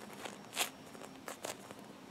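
Hands handling a soft foam squishy toy: a few short, faint rustles of skin and foam, the loudest a little past half a second in.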